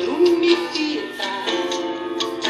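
A song playing from a vinyl record on a portable turntable: a singing voice holding and sliding between notes over instruments, with sharp percussive hits.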